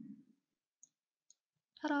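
Two short computer mouse clicks about half a second apart, made while dragging a text box on screen.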